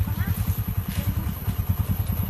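A small engine idling, a rapid, even low pulse.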